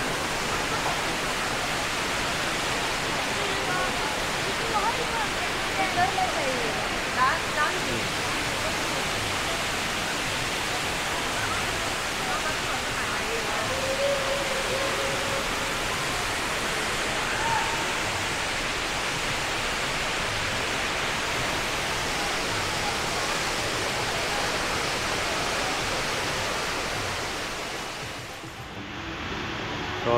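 Rain Vortex indoor waterfall: a steady, even rush of water falling into its pool, with faint voices of people around it. It fades out near the end.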